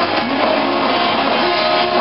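Pop-punk band playing live at full volume: distorted electric guitar, bass guitar and drum kit playing together without a break.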